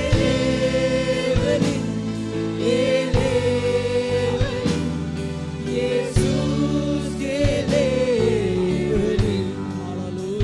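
A man singing a gospel worship song into a microphone in long, wavering held notes, over live keyboard accompaniment with a steady beat.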